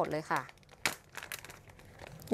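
Thin clear plastic bag crinkling and rustling as it is picked up and handled, with the sharpest crackle a little under a second in.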